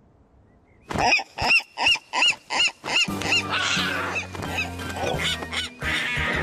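A cartoon seagull squawking: a run of about seven sharp cries, each rising and falling in pitch, about three a second, starting about a second in. Music and a noisy scuffle follow.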